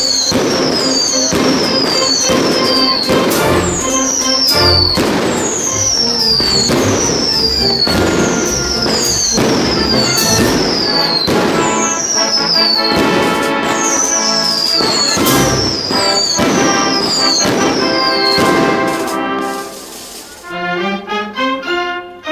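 Whistling fireworks: a rapid string of whistles, each falling in pitch and ending in a bang, roughly one a second, stopping near the end. They are set off as the falla is burned.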